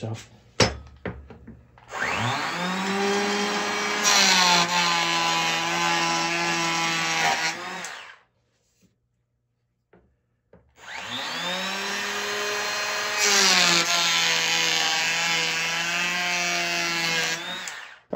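Bosch cordless hand planer run twice. Each time the motor spins up with a rising whine and runs steadily. It grows louder and harsher for a few seconds as the blades take wood off the board's sides, then winds down.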